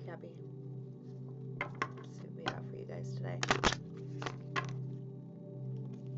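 A deck of oracle cards being shuffled and handled, a quick run of sharp clicks and slaps that is loudest about three and a half seconds in. Soft background music with a steady low drone plays underneath.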